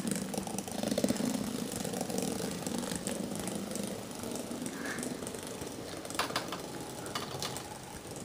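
Small battery-powered toy vehicle's electric motor buzzing steadily, slowly growing fainter, with a couple of faint clicks near the end.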